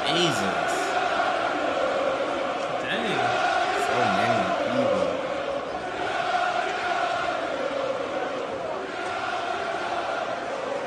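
Coventry City fans chanting their song for Kasey Palmer in a football stand: a mass of voices singing sustained notes together, picked up on a phone.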